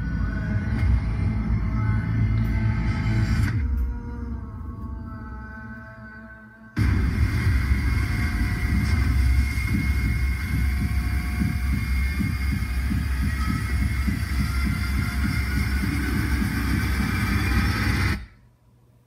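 Film trailer soundtrack of dark, ominous music over a deep rumble. It fades away about four seconds in. A loud, dense wall of music and rumble comes in suddenly about seven seconds in and carries on until it cuts off abruptly at the end.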